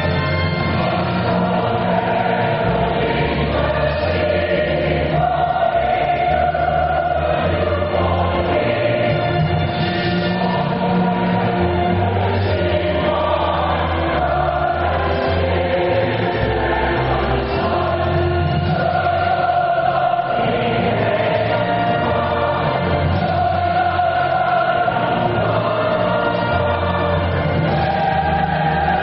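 Choral music: a choir singing held notes over a steady instrumental bass line.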